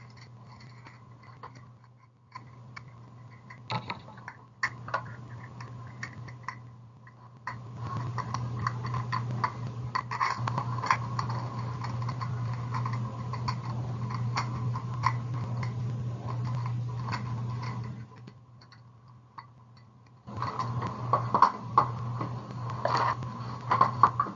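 Clicks, knocks and rattles of small hard objects such as beads and tools being handled and put away while a beading work area is tidied. The sound is sparse at first and busier from about a third of the way in, with a steady low hum under the busier stretches and a short lull near the end.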